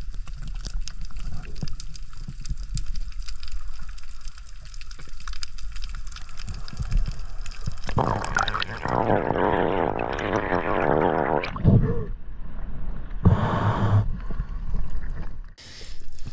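Underwater sound picked up by a diver's camera: a low rumble of moving water with a fine crackle of clicks. About eight seconds in, as the camera nears the surface, a loud rush of splashing, gurgling water takes over for a few seconds, with another short burst near the end.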